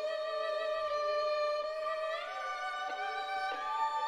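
Solo violin in a concerto, holding long notes with vibrato, climbing to a higher note about halfway through and again near the end.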